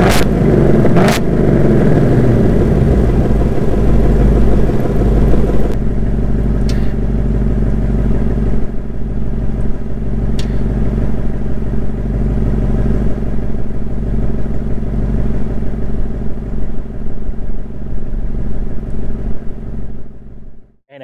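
2024 Ford Mustang Dark Horse 5.0-litre V8 heard at its quad exhaust tips. The revs fall back to idle over the first two seconds, with two sharp exhaust pops in the first second. About six seconds in, the note abruptly goes duller and quieter as the active exhaust switches back to quiet mode, and the engine idles steadily from there.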